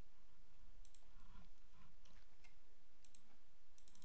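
Several faint, scattered computer mouse clicks over a steady background hiss.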